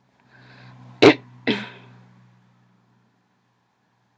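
A person coughing twice, about half a second apart, the first cough the louder, after a short breathy lead-in. The person is sick.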